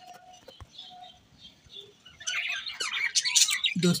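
A flock of aviary budgerigars chirping and chattering. The calls are faint and scattered at first, then grow into dense, louder chatter about halfway through.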